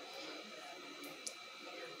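Quiet room tone with a faint steady high-pitched whine and one small click a little past the middle.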